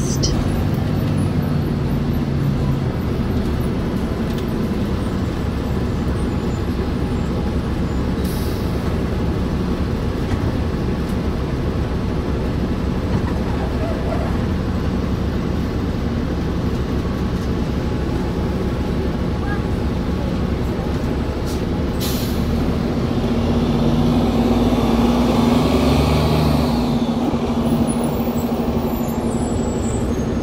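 2008 New Flyer city bus running and driving, heard from inside the passenger cabin: steady engine and road noise. The engine tone grows louder from about 23 to 27 seconds in, and there are two brief hisses, one about 8 seconds in and one about 22 seconds in.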